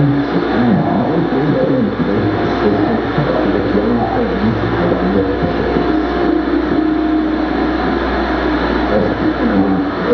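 Live experimental noise music: a dense, loud wall of noise with warbling tones sliding up and down over a steady low drone.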